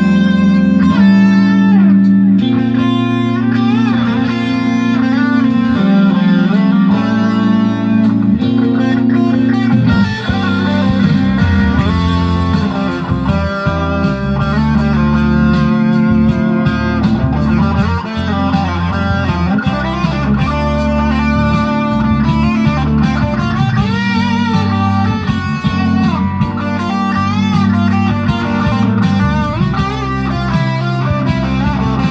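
Electric guitar, an ESP/LTD TE200, played through the Valeton Dapper Mini's overdrive with the settings at about three o'clock: continuous single-note lead lines with an overdriven tone, over steady low notes held underneath.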